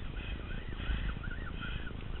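Rumbling wind and handling noise on the microphone, with faint short chirps that rise and fall, repeating several times.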